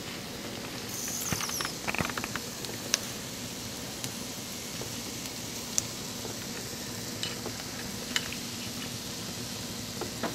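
Asparagus sizzling steadily in a hot skillet, with a few light clicks of a spoon against a small bowl as a breadcrumb-and-parmesan crumble is sprinkled on.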